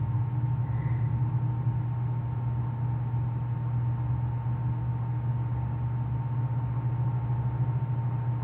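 Steady low electrical-type hum with a faint, thin higher tone running over it, unchanging throughout: the background noise of the voice-over recording, with no other events.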